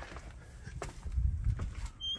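A few soft footsteps with low thuds and faint clicks.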